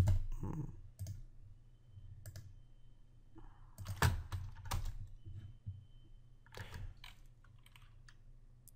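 Computer keyboard keystrokes and mouse clicks, a handful of separate taps spread out, the loudest near the start and about four seconds in.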